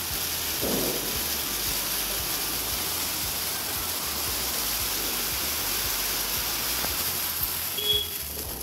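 Ground fountain fireworks (flower pots) hissing steadily as they spray sparks, with a short sharp crack near the end.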